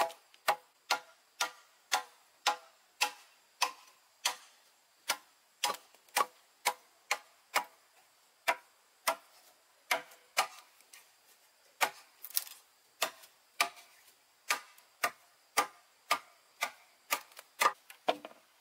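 Machete chopping into the base of a wooden post, short dry strokes at about two a second.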